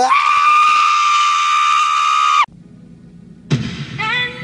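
A man's high-pitched scream, rising into one long steady note of about two and a half seconds that cuts off suddenly. Music starts near the end.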